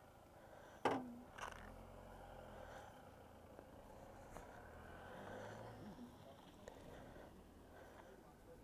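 Quiet handling sounds: a sharp click about a second in and a softer one just after, then faint rustling over a low background hum as riding gear is handled.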